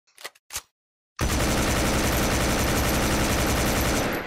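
Automatic gunfire sound effect: two short sounds, then about a second in a long continuous burst of rapid fire lasting nearly three seconds before it fades.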